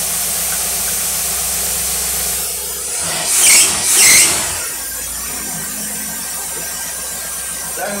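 Shop test engine fitted with a Rochester Quadrajet four-barrel carburetor running steadily, then blipped twice on the throttle about three and four seconds in. Each rev brings a loud high squeal, which the mechanic elsewhere puts down to the alternator. The engine then settles back to a lower idle.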